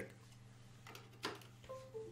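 Faint clicks as a SanDisk USB stick is plugged into the computer, then near the end a short, faint chime of a few tones: the Windows device-connect sound, the sign that the stick has been detected and is loading.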